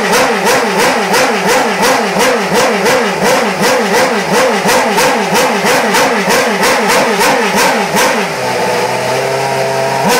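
A Mercedes Formula 1 car's V8 engine is being warmed up in the garage, its throttle blipped up and down in a steady rhythm about twice a second. About eight seconds in it settles to a steady idle, then is blipped once more at the end. It is loud enough that the people around it cover their ears.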